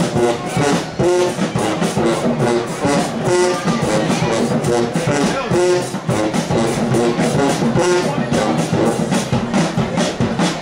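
Marching band playing a brass tune, sousaphones and horns repeating a short riff over a steady, driving drum beat.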